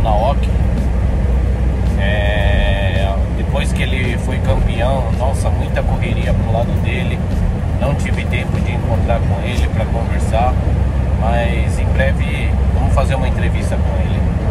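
A man talking inside a moving vehicle's cabin over the steady low rumble of engine and road noise, with a brief high-pitched tone about two seconds in.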